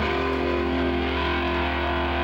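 Distorted electric guitars played loud through amplifiers, ringing out long held chords; the notes change right at the start and then sustain steadily.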